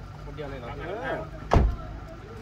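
People talking, and a single sharp thump about one and a half seconds in, the loudest sound.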